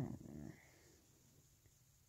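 A short wordless vocal sound, a nasal 'mm' from a person, in the first half-second, then near-silent room tone.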